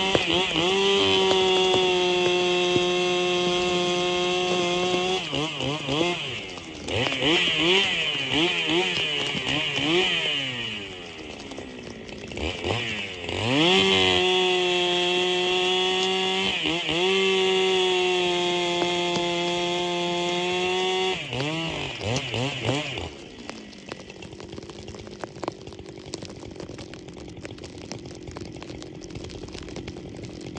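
Gas chainsaw cutting a snow-covered log, the engine held at high revs in long steady stretches, with its pitch sagging and climbing in between as the throttle eases and opens again. About three-quarters of the way through, the engine comes off the throttle and the sound falls away.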